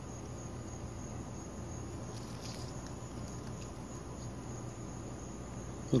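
Insects trilling steadily at a high pitch over a low, even background hum, with a few faint rustles of leaves being handled about two to three seconds in.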